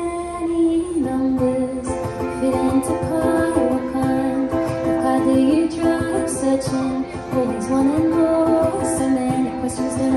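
Ukulele strummed in a steady rhythm, with a female voice holding long wordless notes that slide between pitches.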